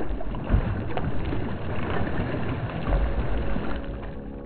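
Water splashing and swirling as a large fish strikes a topwater lure at the surface, over a rough steady noise with low rumbles about half a second in and near three seconds.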